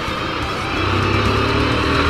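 Honda Titan 150 single-cylinder four-stroke motorcycle engine running under way, with wind rushing past. A steady low engine hum firms up about a second in.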